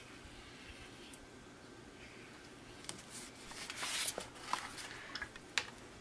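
Soft handling sounds: a brief rustle of paper sliding on a tabletop as the painted envelope is turned, with a few light clicks and taps in the second half.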